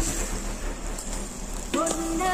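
Kebab skewers sizzling over hot charcoal, a soft crackling hiss; near the end, music with a singing voice comes in.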